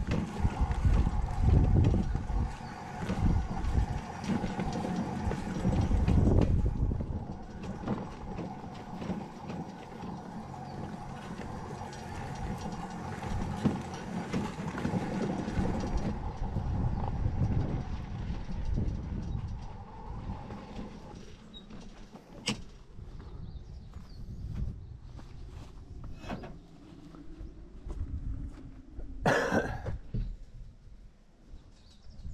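Makita battery-powered wheelbarrow driving over rough ground: a steady electric-motor whine over an uneven low rumble, stopping about two-thirds of the way in. A few sharp clicks follow, and a loud knock comes just before the end.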